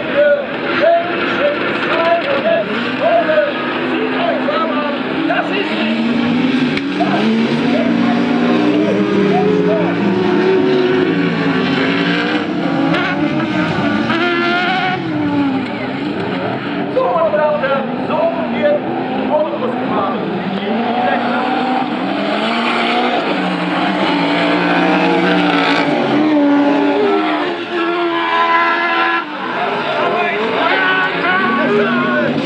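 Several Spezialcross autocross buggies with engines over 1800 cc racing on a dirt track, their engines revving up and down in pitch as they accelerate, shift and pass.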